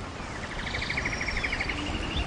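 A bird trilling, a rapid run of about a dozen notes a second lasting about a second, followed by a thinner, higher trill, over the steady rush of a waterfall.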